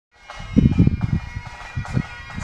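Bagpipes playing faintly, their steady held tones sounding under loud, irregular low rumbling thumps on the microphone in the first second.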